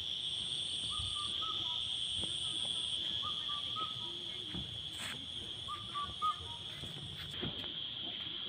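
A steady, high-pitched drone of evening insects such as crickets, with a short call repeated three times a couple of seconds apart.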